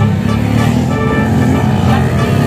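Dirt bike engine running at a motocross track, heard under background music.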